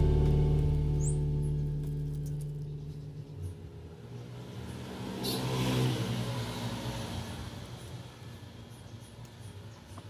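Road traffic: a motor vehicle's engine fading away at the start, then another vehicle passing by, rising to a peak about five to six seconds in and fading again.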